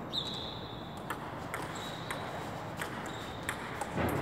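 Table-tennis rally: a celluloid ping-pong ball clicking off paddles and the table, about seven sharp hits at uneven spacing.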